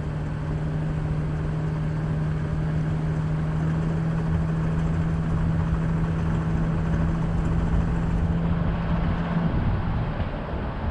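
A vehicle driving along a paved road, with steady engine and tyre noise and a steady hum that stops shortly before the end.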